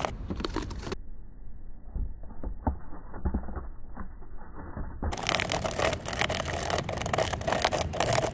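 Handling noise of a clear plastic bottle cup held and scraped against tree bark over a trapped cicada: irregular scraping and crackling clicks. The sound is muffled, its treble cut, from about one to five seconds in. The caught cicada gives no alarm squawk, taken as a sign that it is a female.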